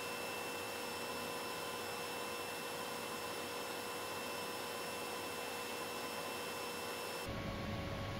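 Steady hiss with faint, even electrical hum tones. About seven seconds in, it changes abruptly to a lower, duller rumble.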